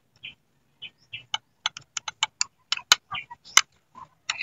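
An irregular run of small, sharp clicks and taps, about a dozen, from fingers handling chilies over a ceramic bowl and plate. Two sharper clicks come near the end.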